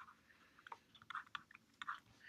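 Faint, short ticks and taps of a stylus writing on a tablet screen.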